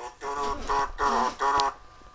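A man's voice: four short syllables over about a second and a half, then only a faint steady hum.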